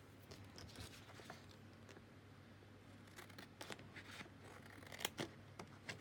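Scissors cutting paper in a few faint, short snips. They start about halfway through, after a near-silent opening.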